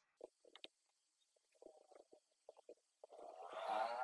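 Faint computer-keyboard typing, a scatter of short key clicks, followed about three seconds in by a louder, wavering, rumbling gurgle.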